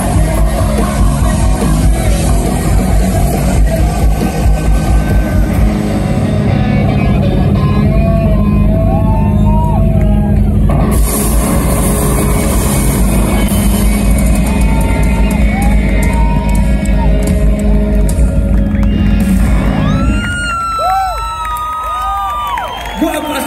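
Rock band playing loud live with electric guitars, bass and drums. The song ends about two seconds before the close, and the crowd cheers and whistles.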